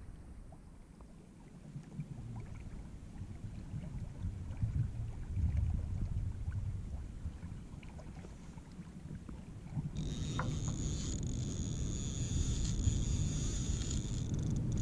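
Low, uneven rumble of water moving around a kayak, with wind on the microphone and small scattered clicks. About ten seconds in a steady high-pitched whine joins in and the sound gets louder.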